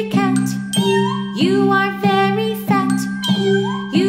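A children's song played by a small acoustic ensemble: a tune of short, bell-like notes over a steady, sustained low chord.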